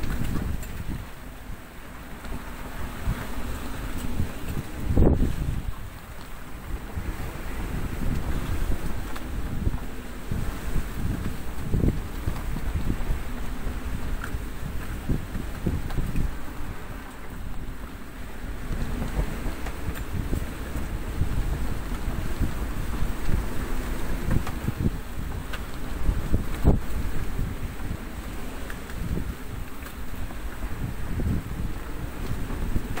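Strong wind of about 30 knots and breaking waves around a 36-foot sailboat in a rough sea, heard from just inside the cabin. It is a steady low rush with irregular surges, the loudest about five seconds in.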